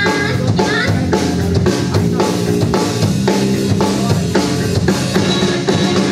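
Live band playing a rock song, the drum kit keeping a steady beat on bass drum and snare over bass guitar, electric guitar and keyboard.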